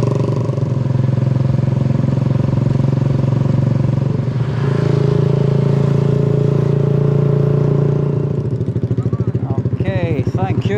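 A small motorbike's engine running steadily at road speed with the passenger aboard, easing off briefly about four seconds in. Near the end it drops to a slower, pulsing beat as the bike slows.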